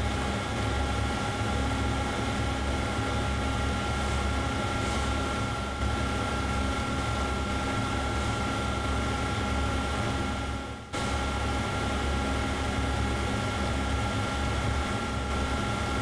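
Steady background hiss with a constant electrical hum and whine, with a brief dropout about eleven seconds in.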